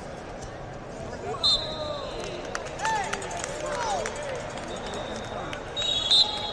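Busy indoor wrestling venue: a general hubbub of voices and shouting, with a short, loud referee's whistle blast about a second and a half in and another near the end.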